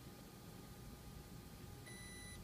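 Near silence: faint room tone with a steady low hum. At the very end, the multifunction printer starts a high electronic alert beep as its panel prompts for paper to be loaded into the bypass tray.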